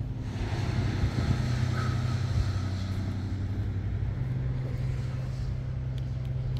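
Steady low hum of an idling vehicle engine with general street noise, and some wind or handling rustle on the microphone.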